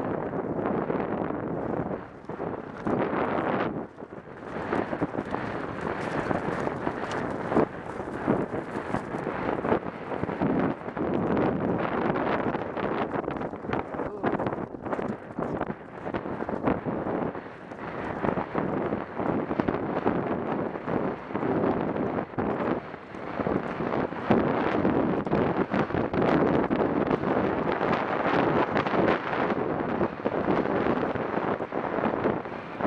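Wind buffeting the microphone of a helmet-mounted camera on a moving horse, with the horse's hoofbeats on grass underneath, loud throughout with irregular gusts and knocks.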